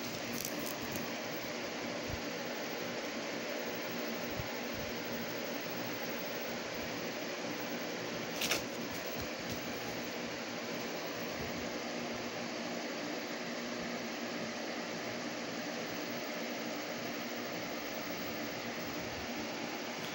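Steady room noise: an even hiss with a faint low hum, with one short click about eight and a half seconds in.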